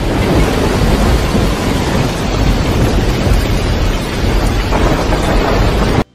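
Heavy rain and floodwater pouring down at the entrance of an underground car park: a loud, steady rush of water with a deep rumble underneath.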